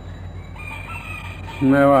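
A faint, drawn-out animal call in the background, held for about a second over a steady low recording hum. A man's voice resumes near the end.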